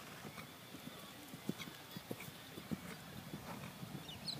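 Faint hoofbeats of a horse at a working trot: a few irregular thuds a second.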